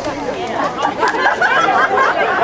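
Overlapping voices of several people talking at once: a steady babble of chatter with no single voice standing out.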